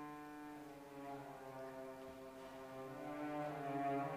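Cello playing a few slow, long-held bowed notes in its low register, swelling louder near the end.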